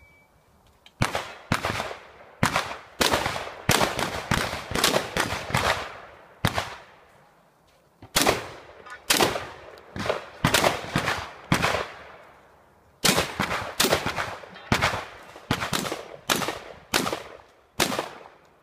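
A shotgun fired rapidly in an IPSC stage run: about two dozen loud shots, in quick strings of several shots roughly a third to half a second apart, with short pauses between strings.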